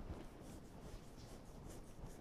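Quiet room tone with faint, light scratching and rustling.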